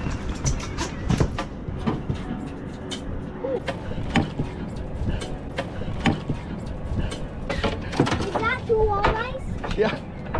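Irregular sharp clicks and knocks of a walleye being netted and handled with fishing gear aboard a boat, over a low wind rumble on the microphone. Indistinct voices come in briefly, mostly near the end.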